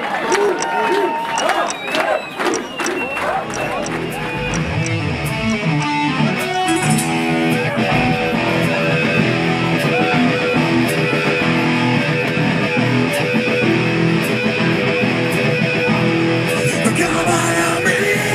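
Live rock band with electric guitars and drums, heard at full volume through the PA. Over the first few seconds crowd shouting and cheering sits over the start of the song, then the full band settles into a steady, dense groove.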